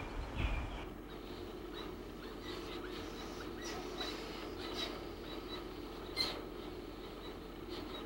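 Elegant trogon nestlings begging with a handful of short, high squeaks scattered through, over a steady low background hum. A dull bump comes near the start.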